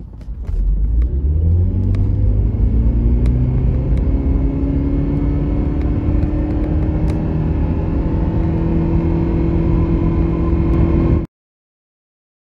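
Inside the cabin of a 2005 second-generation Toyota Prius accelerating hard from a standstill: its 1.5-litre four-cylinder engine comes in about half a second in and climbs quickly in pitch, then holds a high, slowly rising drone as the speed builds, with road noise underneath. The sound cuts off suddenly about eleven seconds in.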